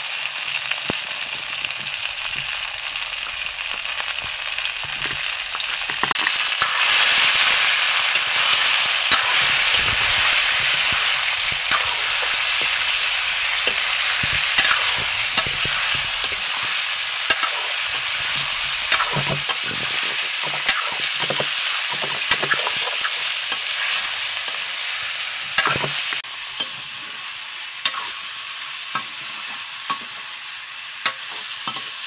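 Chicken pieces sizzling in hot oil in a steel karahi, with a metal ladle scraping and knocking against the pan as it is stirred. The sizzle grows louder about six seconds in and eases near the end, and the ladle knocks come more often in the second half.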